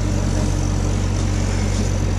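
Bobcat E26 mini excavator's diesel engine running steadily as the machine tracks up steel ramps onto a dump trailer.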